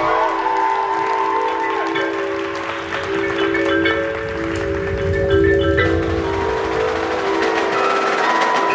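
Indoor percussion ensemble's front ensemble playing marimba and other mallet notes over long held chord tones, with a low rumble swelling in the middle.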